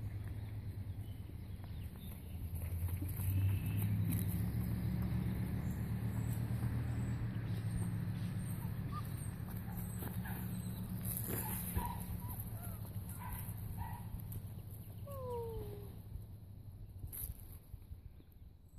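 Young standard poodle puppies giving a few short, high yips and then one falling whine, over a steady low hum.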